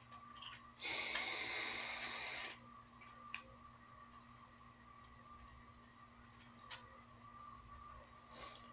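A hissing draw of air through a sub-ohm vape tank on a GX350 mod, lasting nearly two seconds about a second in, then quiet.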